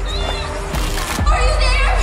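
Horror-trailer score: a low steady rumble under a high, wavering vocal line that comes in twice with a strong tremble, and a short noisy surge just before the one-second mark.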